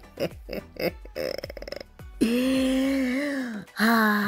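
A woman's drawn-out wordless vocal sounds: a short croaky rattle, then a long held 'ehh' at one steady pitch for about a second and a half, and another held sound starting just before the end.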